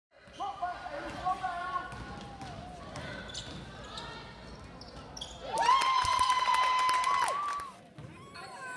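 Gym sound from a basketball game: voices shouting and a ball bouncing on the hardwood floor. In the last few seconds a loud, steady held tone lasts about two seconds, with knocks through it.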